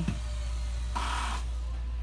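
A steady low hum, with a short rustle of noise lasting about half a second, starting about a second in.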